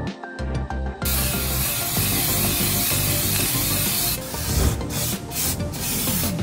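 Aerosol spray hissing over background music: a steady hiss from about a second in, then short repeated bursts from about four seconds in as brake cleaner is sprayed onto the brake disc and hub.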